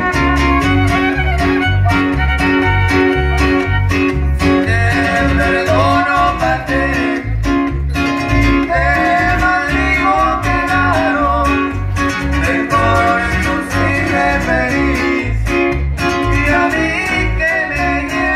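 Live trio music played loud through a PA: a fiddle melody over strummed guitars, with a steady pulsing bass beat.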